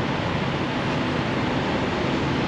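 Steady low hum and rumble of semi-trucks' diesel engines idling in a truck-stop lot, with a wash of noise over it.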